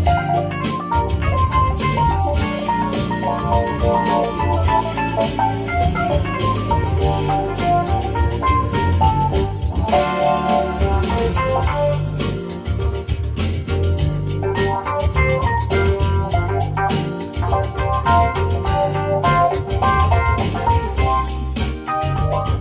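Nord Electro 6D stage keyboard played live with an organ-like sound: chords and melodic runs over a steady bass line and beat, with no pause.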